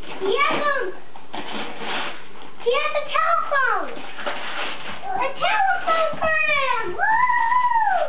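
Wrapping paper being torn and rustled as a present is unwrapped, interleaved with a young child's high-pitched wordless squeals and calls, which grow longer near the end.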